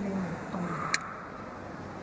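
Steady background noise with a faint voice trailing off at the start and a single sharp click about a second in.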